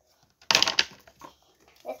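A short, sudden rustle of a paper envelope being handled and opened, about half a second in.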